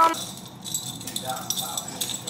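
Small metal objects jingling and clinking lightly while being handled, with a crisp run of small clicks.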